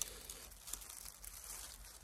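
Faint rustling of dry leaf litter as a hand picks a small bolete mushroom from the ground, with a brief tick at the start.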